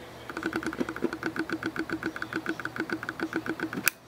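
Camera lens autofocus motor buzzing in a fast even pulse, about eight a second, while it hunts for focus. It ends near the end with one sharp click.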